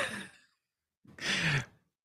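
A person sighing: two short breathy exhales, one right at the start and a second, with a slight falling hum, about a second in.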